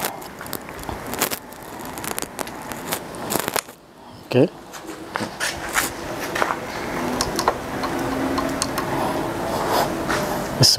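Handling noise from an FX Impact MK2 PCP bullpup air rifle between shots: scattered clicks and scrapes of metal and clothing as the gun is worked and moved.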